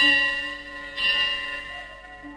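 Instrumental passage of a Tamil film song: a bell-like chime struck twice, at the start and about a second in, each ringing and fading over a held low note.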